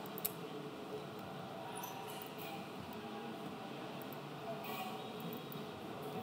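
Faint computer mouse and keyboard clicks over steady room noise, with one sharper click about a quarter second in.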